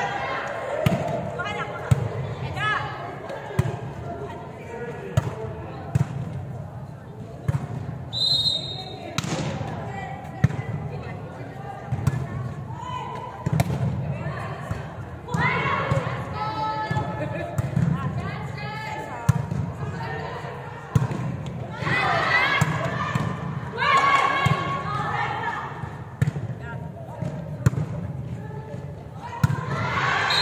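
A volleyball being struck again and again during a rally: sharp slaps of serves, bumps and spikes, with echoes in a large sports hall. Players' shouts and calls rise in bursts.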